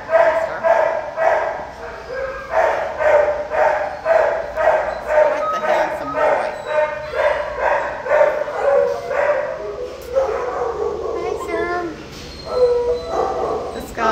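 Dog barking over and over, about two barks a second, changing after about ten seconds to higher, shifting yelps.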